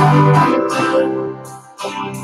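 Live worship band music led by guitar chords. The sound dips about two-thirds of the way through and a new chord comes in just before the end.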